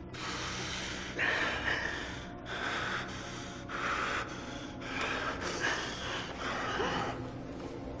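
A man's heavy, ragged breathing: harsh gasping breaths in and out through bared teeth, about one a second.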